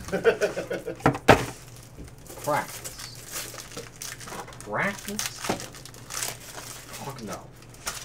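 Foil trading-card pack wrapper being torn open and crinkled by hand, with sharp loud rips about a second in, then scattered crinkling as the cards come out. Faint voices in the background.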